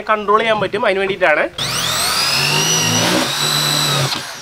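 An electric drill starts about a second and a half in, its whine rising in pitch and then running steady as it drills into a metal motor-mount bracket.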